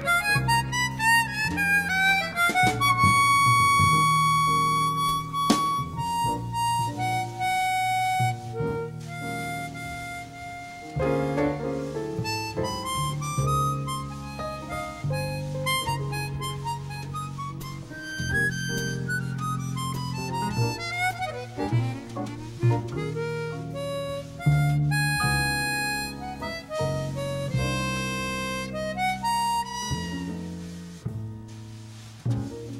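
Chromatic harmonica playing a slow jazz ballad melody. Fast falling runs alternate with held notes, including one long high note about three seconds in. Double bass plays low notes underneath.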